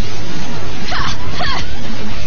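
Loud, dense whooshing and zapping sci-fi transformation sound effects over music. Quick swooping sounds come about a second in and again shortly after.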